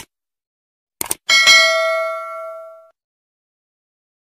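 Two quick click sound effects about a second in, then a bright bell ding that rings out and fades over about a second and a half: the sound effect of a YouTube subscribe-button animation.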